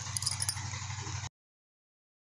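Steady low hum and hiss of a home recording, with a few faint clicks in the first half second. The sound cuts off suddenly a little past halfway, into complete silence.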